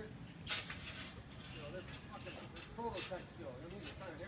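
Faint speech of people talking, with a brief rustling burst about half a second in and a few light clicks.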